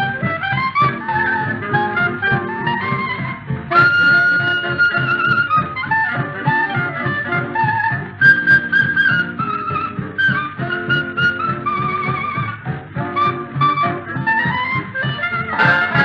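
Instrumental 1950s boogie-woogie dance-band music with a steady beat, horns carrying the melody. A long high note is held about four seconds in.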